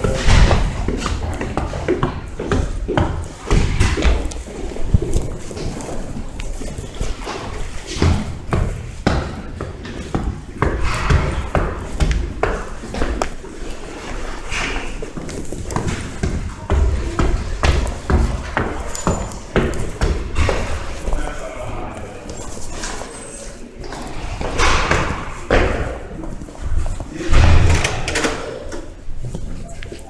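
Footsteps climbing stairs, an irregular run of thumps and knocks, with indistinct voices of people nearby.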